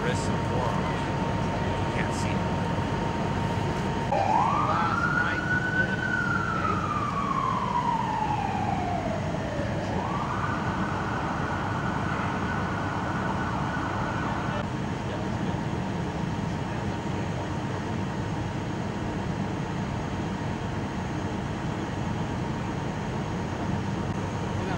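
An emergency vehicle's siren starts about four seconds in. It rises, falls slowly in one long wail, then switches to a fast yelp for about four seconds and cuts off. A steady low rumble of idling engines runs underneath.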